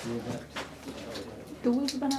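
A man's low voice murmuring briefly at the start and a short spoken syllable near the end, with a few faint clicks in between.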